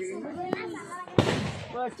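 A firecracker goes off with a single sharp bang about a second in, amid children's chatter.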